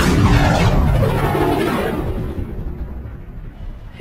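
A deep boom sound effect that dies away, fading out over about three seconds.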